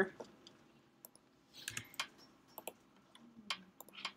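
A few separate computer keyboard and mouse clicks, spaced irregularly, as code is edited.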